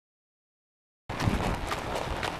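Dead silence for about the first second, then the hooves of a ridden quarter horse walking on dirt: irregular thumps over a steady haze of outdoor noise.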